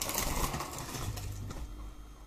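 Rustling and light clatter of hands rummaging through a handbag and gathering a handful of plastic pens, loudest at first and fading over about a second and a half.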